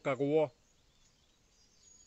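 A man's voice ends about half a second in, followed by a quiet outdoor background with a few faint, high chirps.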